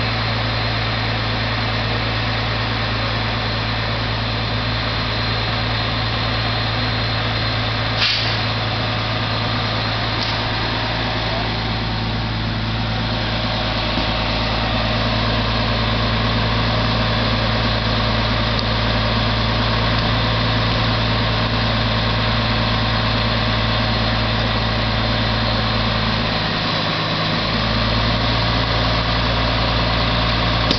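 Fire engine's engine running steadily at idle, with a low steady hum under a constant rushing noise, and one sharp click about eight seconds in.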